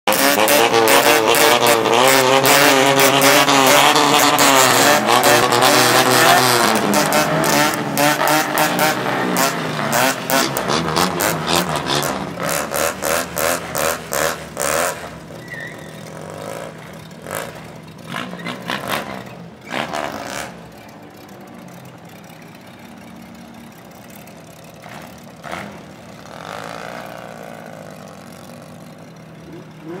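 Car engines revving loudly with the pitch swinging up and down. Around the middle comes a run of quick throttle blips, about two a second. In the second half the engines are quieter and running steadily, with a few short revs as the cars pull away.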